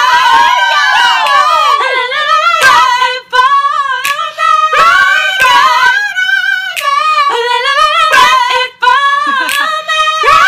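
A single high voice singing unaccompanied, long wordless runs with wavering vibrato, broken by short breaths about three seconds in and near the end.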